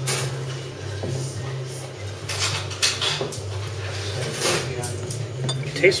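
Bar background: glasses and crockery clinking a few times over a murmur of voices and a steady low hum.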